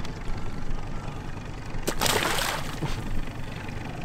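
A short splash of water about two seconds in, as a released northern pike kicks free of the hand and into the lake. It plays over the steady low rumble of the boat's motor.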